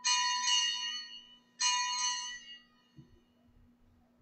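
Altar bell rung at the elevation of the host after the consecration: bright metallic strikes at the start, about half a second in and again about a second and a half in, each ringing out and fading away.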